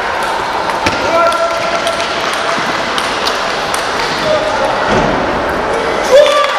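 Celluloid table tennis ball clicking off bats and the table in a rally: a few sharp, irregular clicks, over steady crowd chatter.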